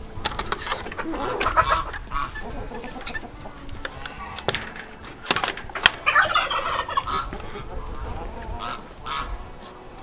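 Chickens clucking and calling in short bursts, with footsteps.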